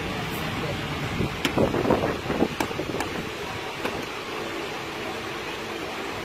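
Hard plastic clicks and knocks as a motorcycle's plastic airbox housing is pushed and seated into the frame, several sharp clicks between about one and four seconds in. Under them runs a steady background hum.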